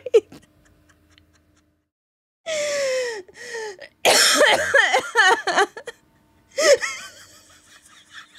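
A woman laughing hard in wheezing, gasping bursts: a brief laugh at the start, a pause of about two seconds, then three breathless, high-pitched bouts of laughter.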